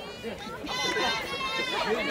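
Spectators' voices outdoors, talking and calling out, with one high voice calling out loudly through the second half.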